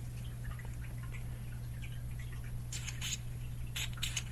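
Short hisses from an aerosol can of silicone gun-oil spray squirted through its straw nozzle: about three quick bursts in the last second and a half. A steady low hum runs underneath.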